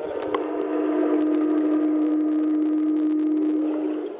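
Steady low hum of pool machinery heard with the microphone underwater in a swimming pool, with a few faint higher tones over it.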